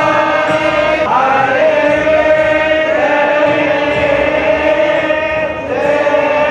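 Devotional chanting in long held notes, the pitch gliding up into each new note every second or two.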